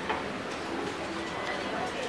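Footsteps on a hard floor, a sharp step right at the start and a few fainter ones after it, over a murmur of background voices.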